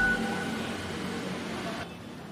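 The tail end of a news transition jingle: a last short high note, then the sound fading away, cut near the end to a low steady background hiss.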